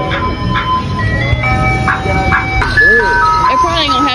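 Ice cream truck jingle: a simple electronic tune of plain, stepped single notes playing from the truck's loudspeaker.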